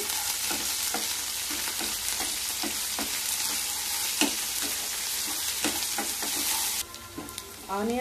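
Chopped onions and green chillies sizzling in hot oil in a nonstick kadai, with a spatula scraping and clicking against the pan as they are stirred. The sizzle drops away abruptly near the end.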